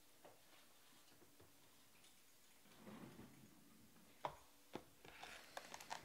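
Near silence, broken by two faint clicks about four seconds in and then a light, crinkly rustle of foil card packs being handled in a cardboard box near the end.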